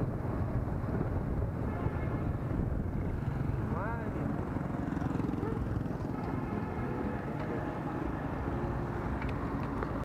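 Motorbike ride: a steady low rumble of engine, tyres and wind on the microphone. About four seconds in there is a brief rising pitched sound.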